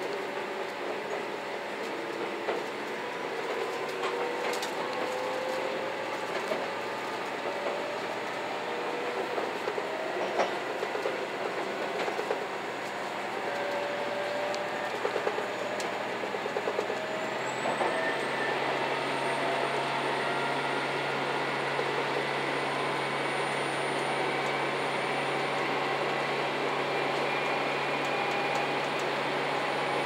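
JR Shikoku N2000-series diesel multiple unit heard from the front of the cab as it accelerates. Its engine and transmission whine rises in pitch over the first half, then changes about 17 seconds in to a steady low hum. The wheels click over the rail joints.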